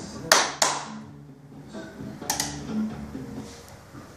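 Two sharp hand claps in quick succession, then another pair about two seconds in: claps to trigger the clap-activated control of a Smart-BUS G4 home automation panel.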